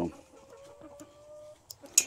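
A chicken giving one faint, long, drawn-out call that rises slightly in pitch, followed near the end by a couple of sharp clicks.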